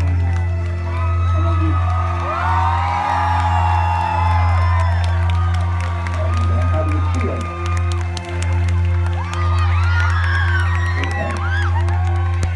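Live electronic music heard from within the crowd: a heavy, sustained synth bass, with sliding vocal and synth lines above it and audience members whooping and cheering close by.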